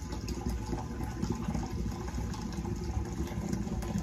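Fermenting mead must pouring in a steady stream from a plastic bucket through a funnel into a glass carboy, a continuous splashing fill.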